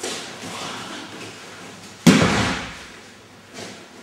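A person's body landing on a thin mat over a hard floor as they are thrown: one heavy thud about two seconds in, fading over about a second.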